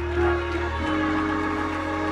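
Organ holding sustained chords, moving to a new chord a little under a second in.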